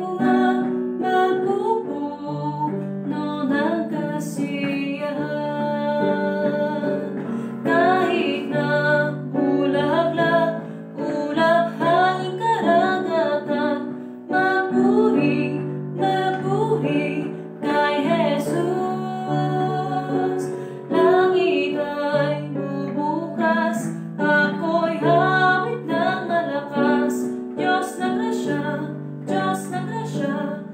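A woman singing a worship song in Tagalog over held chords on an electronic keyboard.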